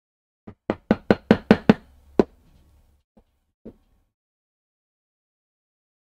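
A white-headed leatherworking maul strikes a stitching iron, driving it through leather to punch stitching holes. There is a quick run of about seven sharp knocks, roughly five a second, then one more, then two light taps.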